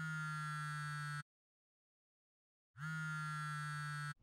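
Smartphone ringtone ringing twice: a steady electronic tone with many overtones, each ring lasting about a second and a half with a short upward slide at its start, and a second and a half of silence between them.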